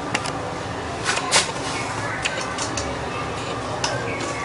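Scattered small clicks and metallic taps of hand tools, pliers and a screwdriver, working wires and terminals on an electrical switch board, about eight in all, the loudest about a second and a half in, over steady background noise.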